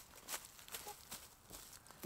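Faint footsteps crunching through dry fallen leaves, several short crackling steps.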